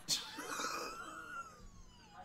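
Quiet, breathy laughter from two people, with one high voice sliding down in pitch over about a second.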